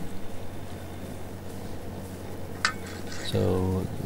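A single light metallic clink, about two and a half seconds in, from an aluminium spirit level against a metal edge, over a low steady hum.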